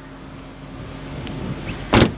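Shuffling and handling noise building as someone climbs out of the car, then a single loud thump near the end: the car door shutting.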